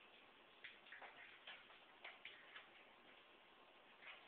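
Near silence: room tone with a few faint, light ticks or clicks at uneven intervals.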